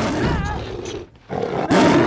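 Bengal tiger roaring twice as it lunges, the second roar louder and peaking near the end.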